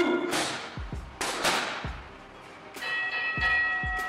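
Gloved punches striking a heavy bag, each a sharp hit, over background music with a steady beat. About three seconds in, a bell-like ringing tone starts and holds.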